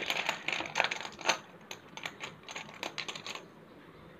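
Spellex Junior plastic letter tiles clicking and clattering against each other as a hand stirs through them in the game box to draw one. A quick, irregular run of light clicks that stops about three and a half seconds in.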